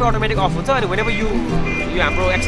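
A man talking over background music.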